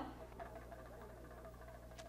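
Very quiet: a faint steady low hum with faint wavering tones underneath, and no clear event.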